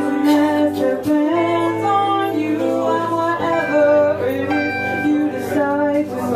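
A woman singing a slow melody live, accompanying herself on a guitar.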